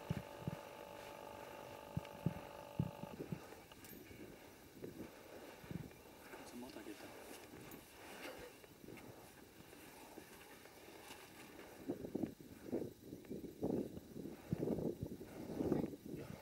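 Hands digging and scooping dry dune sand, a quiet scraping and shifting of sand, with faint murmured voices. A steady hum is heard at first and stops about three seconds in; the scraping and murmurs grow busier near the end.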